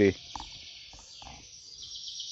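Faint outdoor background of distant birds chirping over a steady high hiss, growing slightly louder toward the end.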